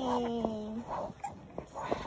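A four-month-old baby cooing: one drawn-out vowel sound that slides gently down in pitch, followed by a couple of softer short coos.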